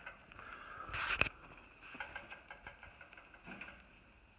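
Rustling and knocking from handling the camera and a digital refrigerant gauge, with a louder clatter about a second in and light scraping after, over a faint steady high-pitched drone.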